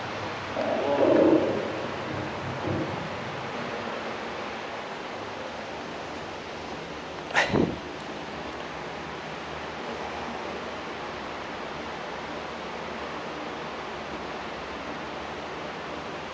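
Steady hiss of the recording's background noise, with a short muffled sound about a second in and a sharp double knock about seven seconds in.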